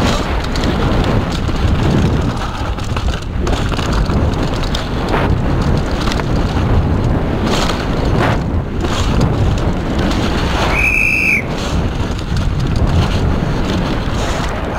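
Downhill mountain bike descending fast over a rough dirt and rock trail: loud wind rushing over the bike-mounted camera's microphone, with the bike rattling and knocking over bumps. A short high-pitched whistle sounds once about eleven seconds in.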